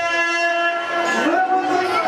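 Loud, steady held notes of the performance's folk music, at least two pitches sounding together like a horn chord, shifting to a new pitch about halfway through as a voice slides in.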